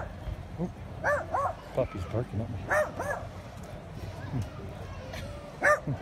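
Small dog yapping: short, high-pitched barks, mostly in quick pairs, about six in all.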